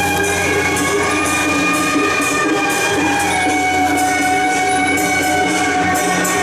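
Procession music: wind instruments holding long, steady notes over cymbal clashes that come about twice a second.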